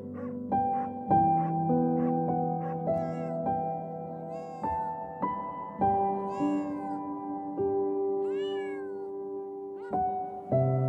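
A domestic cat meowing about four times, each call rising and then falling in pitch.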